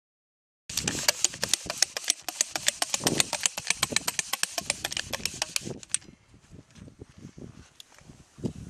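Rapid, irregular clicking and tapping, many sharp clicks a second, starting just under a second in and stopping suddenly about six seconds in, after which only faint low knocks and rustle remain.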